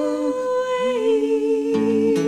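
Closing bars of a country duet: a man's and a woman's voices humming long wordless notes in harmony, an octave apart, with an acoustic guitar chord strummed near the end.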